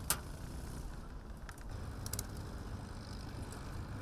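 Low, steady rumble of boat engines running on the river, with a single brief click just after the start.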